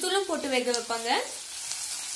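A voice talking for about the first second, then onions and chillies sizzling in hot oil in a kadai as they are stirred.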